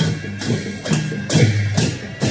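Traditional Kirati drums and hand cymbals played together in a steady beat of about two strokes a second. Each deep drum beat is paired with a bright metallic clash.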